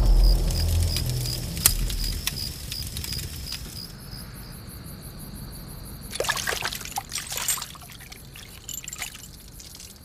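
Water trickling and bubbling, loudest in a burst about six seconds in. Before it, a fading low rumble, a steady high pulsing chirp and scattered crackles that fit a campfire with insects at night.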